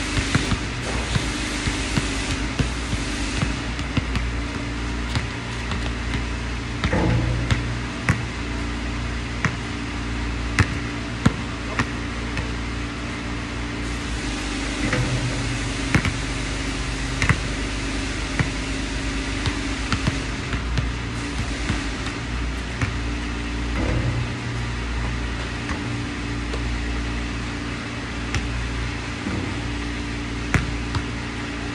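A basketball bouncing on a hard outdoor court, with sharp single thuds every few seconds as it is dribbled and shot at the hoop, over a steady low background hum.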